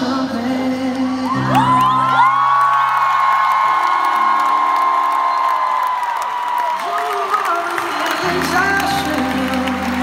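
Live pop ballad: a male singer holds one long high note for about five seconds over sustained piano chords, with a crowd whooping and cheering.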